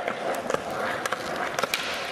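Skateboard wheels rolling on a hard floor, with several sharp clacks of the board and trucks hitting down.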